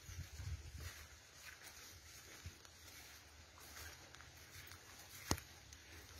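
Faint footsteps along a grassy, overgrown dirt path, with soft thuds in the first second and light rustling of plants. A single sharp click comes about five seconds in.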